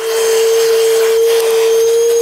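Milwaukee M18 FUEL 2-gallon cordless wet/dry vacuum running with a steady motor whine, air and sawdust rushing through its nozzle as it is drawn along the crevices between boards.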